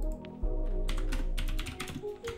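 Typing on a computer keyboard: a quick run of keystrokes begins about a second in, over steady background music.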